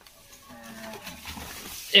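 Quiet stretch with faint low calls, then a loud wavering call from a farm animal starting right at the end.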